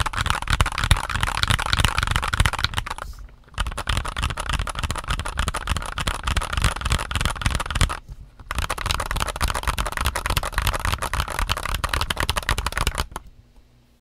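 Steady fast typing on a Mistel MD600 split 60% keyboard with Gateron Silver linear switches and OEM-profile ABS keycaps: a dense run of keystroke clacks. It pauses briefly about three seconds in and again about eight seconds in, and stops about a second before the end.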